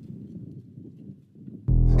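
Low, quiet outdoor rumble, then about 1.7 seconds in the band comes in with a loud, deep bass note and a held chord, the start of a funk track.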